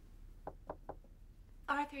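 Three quick knocks on a door, evenly spaced, followed near the end by a woman starting to speak.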